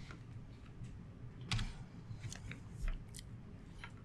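A few faint, scattered clicks and small taps over a low, steady room hum.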